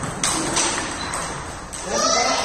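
Table tennis rally: a few sharp clicks of the ping-pong ball off rackets and table, heard over voices in the background.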